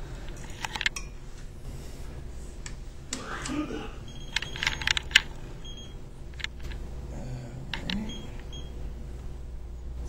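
Scattered light clicks and taps from hands working a Leica 1205 total station, over a low steady room hum, with a single cough about four seconds in.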